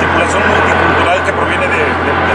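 A man's voice over loud, steady background noise with a constant low hum.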